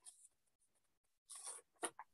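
Near silence in a small room, broken by two faint, brief rustles in the second half.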